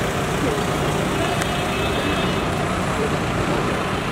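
Steady street traffic noise with indistinct voices of people nearby.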